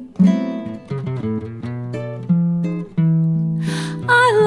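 Acoustic guitar playing a run of plucked notes over a held low note, in an instrumental gap between sung phrases of a song. A brief breathy hiss comes near the end, just before the voice returns.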